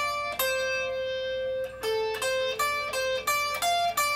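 Electric guitar playing single notes of a D blues scale drill at the 10th and 13th frets of the top two strings: one note held for over a second, then a run of short notes, about two or three a second.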